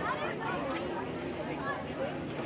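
Indistinct voices and chatter from people around the field, with no clear words.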